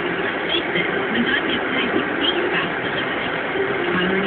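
Steady road and engine noise inside a moving car, with indistinct speech faintly underneath.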